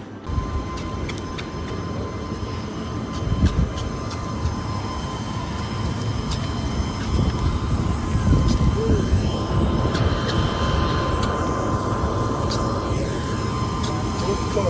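Jet aircraft noise on an airport apron: a steady high whine over a loud, continuous rumble.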